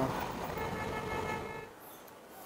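Distant outdoor traffic ambience with a faint, steady horn-like tone held for about a second, cut off abruptly near the end.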